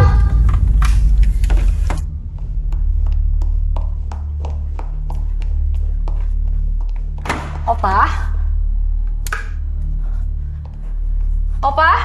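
Suspense film score: a loud, deep droning pulse that starts abruptly, with a fast run of ticks over it for the first few seconds. A short voice sounds about eight seconds in.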